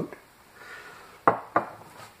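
Two sharp knocks of hard dishware being handled and set down, about a third of a second apart, after a faint rustle.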